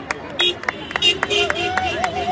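Car horns honking as vehicles pass, in short repeated beeps and a longer held blast near the end, mixed with sharp claps or clicks from the crowd.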